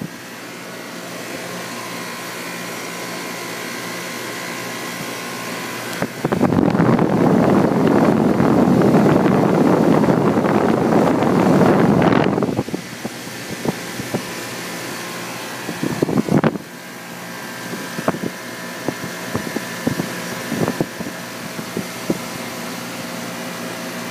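Guardian 4-ton central air conditioner's outdoor condensing unit running: the condenser fan blowing air and the Bristol compressor humming steadily, with a few steady tones in the hum. For about six seconds, starting about a quarter of the way in, the air rush grows much louder as the fan grille is approached closely.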